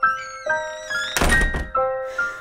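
Gentle piano background music with one dull thump about halfway through, as a small plastic toy figurine is knocked or set down on a tabletop by hand.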